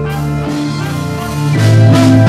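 Live band playing: drums, bass and electric guitar over sustained chords, swelling louder with drum and cymbal hits about one and a half seconds in.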